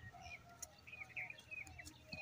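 Faint, scattered chirps of small birds over quiet rural background.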